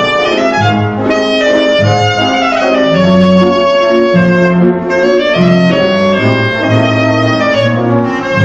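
Clarinet solo in Gypsy style: long held notes with slides between them, over a band accompaniment with a bass line that changes note about every half second to a second.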